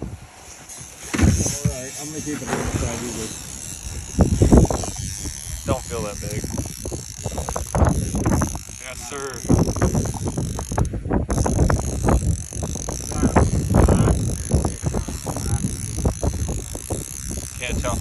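A fishing reel being cranked to bring in a hooked fish on a trolling line, with repeated short mechanical clicks. Wind buffets the microphone, and indistinct voices come and go.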